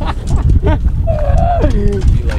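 Wind buffeting the microphone over water rushing and splashing along a sailboat's hull. About halfway through, a person's drawn-out vocal exclamation falls steadily in pitch.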